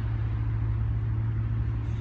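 A steady low-pitched drone with rumble beneath it, unchanging in level and pitch.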